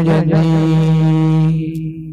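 A young man's unaccompanied voice singing a naat, holding one long steady note that fades out near the end.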